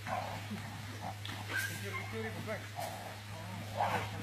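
A dog making short, scattered high calls among low voices, over a steady low hum.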